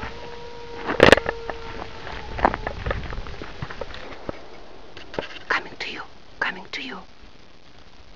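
A wolf howl held on one steady pitch for about two and a half seconds, cut across by a sharp loud knock about a second in.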